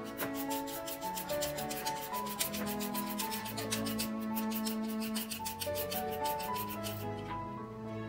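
A julienne peeler's serrated blade shredding a raw carrot in rapid, repeated rasping strokes that stop about seven seconds in. Background music plays underneath.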